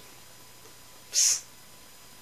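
A single short, sharp hiss, about a quarter second long, about a second in.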